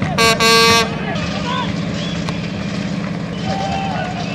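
A horn blown twice in quick succession, a short blast then a longer one, at a steady pitch, over a background of shouting voices from a crowd.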